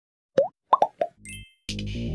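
Logo-intro sound effects: four short, quick rising blips, then a low thud with a bright chime. Electronic intro music with a heavy bass starts near the end.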